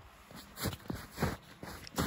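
Footsteps in deep snow: boots sinking into snow with each step, three steps about half a second apart.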